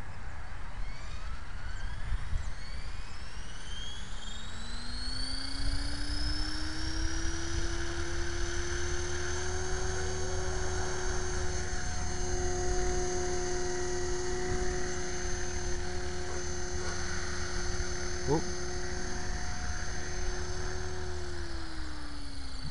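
Electric Align T-Rex 500 RC helicopter spooling up. The motor and rotor whine rises in pitch over the first several seconds, holds steady while it hovers, and starts to fall near the end as it spools down. The flight is a test of a newly set tail gyro gain.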